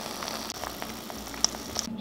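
Three eggs frying in a non-stick pan: a steady sizzle with scattered small pops, one sharper pop about one and a half seconds in.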